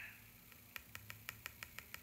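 Near silence broken, less than a second in, by a quick, even run of faint clicks, about seven a second, lasting about a second and a half.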